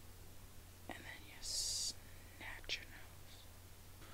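Faint whispering or breathy voice sounds, with a short hiss about a second and a half in and a couple of soft clicks.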